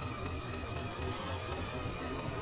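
Motorcycle engine running at a steady cruise, with wind rushing over a helmet-mounted camera.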